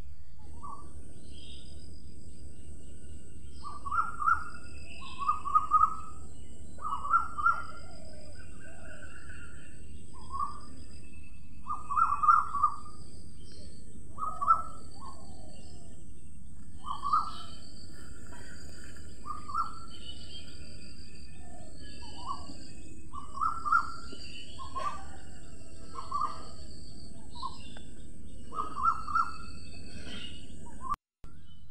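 Birds calling: short calls repeated roughly once a second, with fainter, higher chirps between them, over a steady high-pitched buzz.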